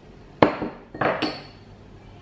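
Two sharp knocks of small kitchen prep bowls against a hard counter as they are put down and picked up, about half a second apart, each with a brief ring.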